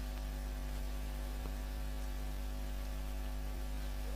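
Steady electrical mains hum: a low drone with a faint buzz of evenly spaced overtones above it, unchanging throughout.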